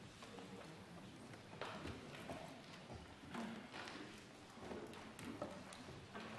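Quiet room tone of a large debating chamber during a vote: a faint murmur with scattered light taps and knocks at irregular moments, the kind made at desks and on voting consoles.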